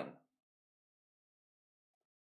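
Near silence; the tail of a spoken word fades out at the very start.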